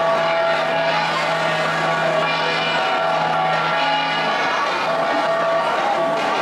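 A gangsa ensemble of flat bronze gongs played together, their tones overlapping into a steady, dense ringing.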